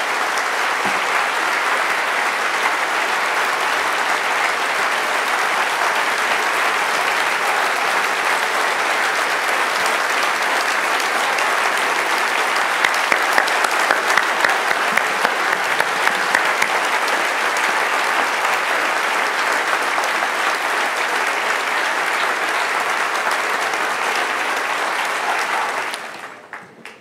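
Large audience applauding steadily for a long stretch; some louder, sharper claps stand out about halfway through.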